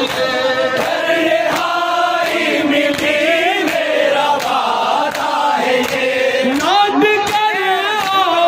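A noha (Shia lament) sung by a group of men in unison behind a lead reciter on a microphone, with a steady rhythm of matam chest-beating strikes about twice a second.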